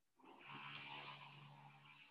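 A faint, held voiced sound, like a person humming or drawing out a vowel, lasting nearly two seconds.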